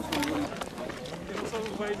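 Footsteps of a group of people walking on a dirt road: irregular short scuffs and crunches, with several voices talking over them.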